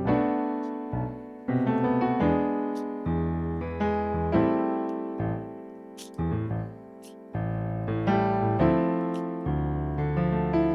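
Piano playing a slow run of extended jazz-style chords, such as C6 over G and D minor 9. Each chord is struck and left to ring and fade before the next.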